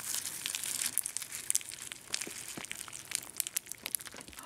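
Cocoa Krispies puffed-rice cereal crackling and popping in the bowl as milk soaks into it: many tiny, quick, irregular snaps.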